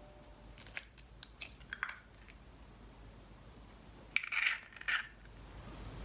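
An egg being cracked into a glass mixing bowl: a few light clicks and taps of shell against glass in the first two seconds, then a short crackle of the shell breaking open about four seconds in.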